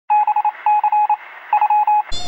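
Electronic beeping at one steady pitch: three quick runs of short beeps with brief pauses between them.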